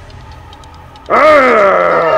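Soft background music, then about a second in, several people scream loudly together, their voices sliding down in pitch.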